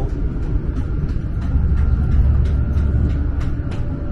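Steady low running rumble inside a Chinese high-speed train travelling at speed, swelling slightly about halfway through, with a faint steady high tone above it.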